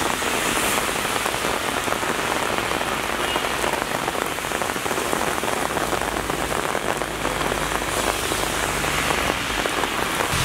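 Heavy downpour falling on a wet, puddled city street: a steady, dense patter of raindrops on the asphalt.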